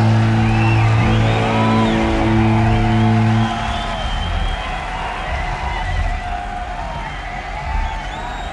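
Live rock band's sustained, droning guitar note ends the song, cutting off about three and a half seconds in. It leaves festival crowd noise with scattered whoops and another band playing faintly in the distance.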